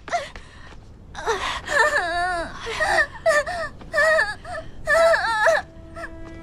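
A young woman's high-pitched wailing cries in several wavering bursts. Near the end a steady, held note of background music comes in.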